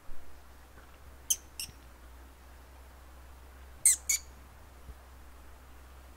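Short, sharp, high bird calls in two pairs, each pair a fraction of a second apart: one pair about a second and a half in, a louder pair about four seconds in, over a faint outdoor background.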